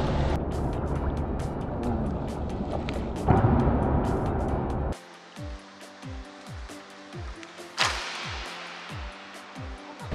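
Pool water sloshing and splashing around a swimmer in the water, with a louder splash about three seconds in. About halfway through it gives way to music: steady held notes over deep bass hits that drop in pitch, about two a second, with one sharp hit near eight seconds.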